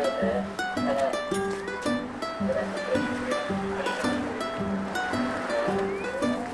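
Light, upbeat background music of short plucked string notes in a steady, bouncy rhythm.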